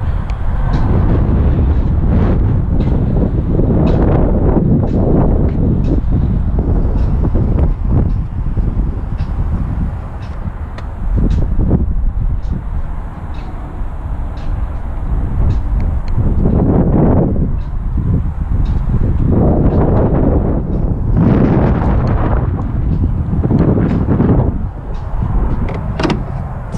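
Wind buffeting the camera microphone, a low rumble that rises and falls in gusts, with occasional light clicks.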